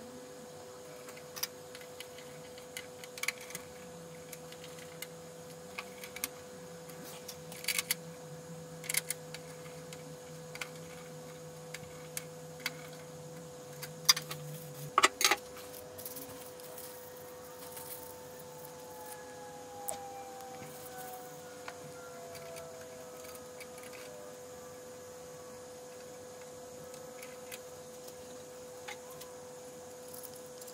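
Light clicks and taps from handling small metal server parts, a CPU retention bracket and a Xeon-type processor, scattered through with the loudest clatter about halfway. A faint steady whine sits underneath, with a fainter tone slowly falling in pitch in the second half.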